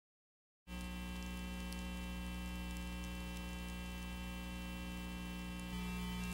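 Steady electrical mains hum, a low buzz with many overtones, cutting in abruptly after about half a second of dead silence, with faint crackle on top.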